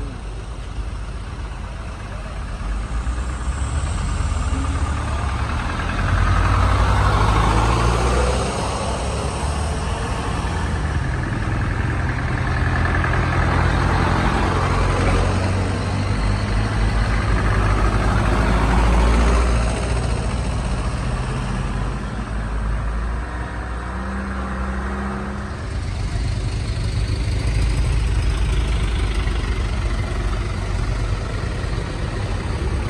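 Heavy diesel truck engines running under load as trucks climb past close by, the sound swelling twice as trucks go by.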